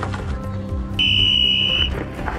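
Background music, with a high, steady electronic beep that starts about a second in and lasts just under a second.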